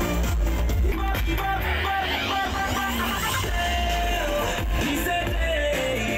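Live band music from a large outdoor stage PA: guitar over a heavy, steady bass.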